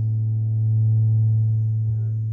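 A single low keyboard pad note held steadily through the concert sound system, swelling slightly about halfway through, as a sustained chord under the pause before the next song.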